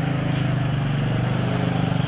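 Steady engine drone of a motor vehicle running at an even pitch, with no rise or fall.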